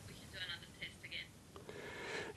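Faint, thin speech: a woman talking over a video-call link, a few short phrases in the first second or so.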